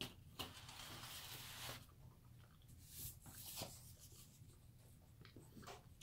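Faint chewing of a bite of pepperoni flatbread pizza with a crisp crust: a few soft crunches and clicks and a short scratchy stretch about a second in, otherwise near silence.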